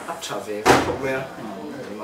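A single loud, sharp thump, like a door shutting, about two-thirds of a second in, over men talking.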